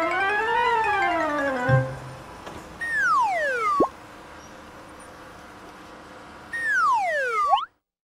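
Cartoon sound effects: a wavering tone that rises and falls for the first second or two, then two falling whistle glides, about three seconds in and about seven seconds in, the second ending in a quick upward flick. They accompany the animated crane lowering the torus and then the sphere into place.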